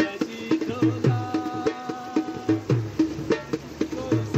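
Dhol drumming in a steady, quick rhythm, with deep bass strokes under sharper treble slaps. A long held melodic note sounds over the drumming from about a second in.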